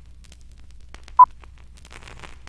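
Old-film countdown leader soundtrack: a steady low hum with scattered crackles and pops of worn film, and a single short, loud high beep (the countdown's two-pop) about a second in.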